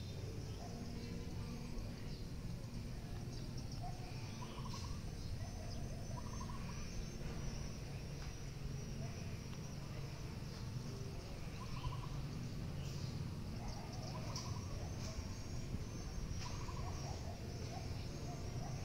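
Faint outdoor ambience: a steady low rumble with scattered faint, short bird calls.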